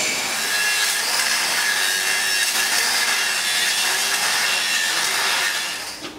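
Electric welding during a repair to a steam locomotive's boiler: a steady hiss and crackle, fading out near the end.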